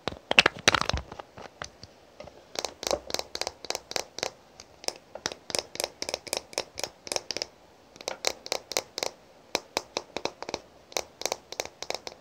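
Long fingernails tapping on a glass perfume bottle: runs of short, sharp clicks, about five a second, with brief pauses. In the first second there is a louder rubbing and clicking as the black cap is pulled off a glass roll-on bottle.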